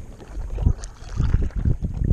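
Wind buffeting the microphone of a chest-mounted GoPro in irregular gusts, over the faint swish of a stand-up paddle stroking through calm water.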